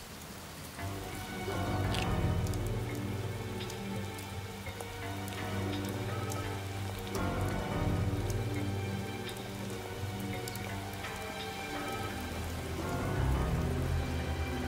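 Rain falling steadily, with many small drips, under background music of long held notes. The music comes in about a second in and changes chord twice.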